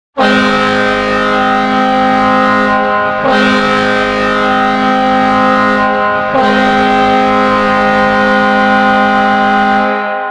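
Hockey arena goal horn sounding three long blasts, a loud chord of several steady tones, barely broken between blasts, signalling a goal.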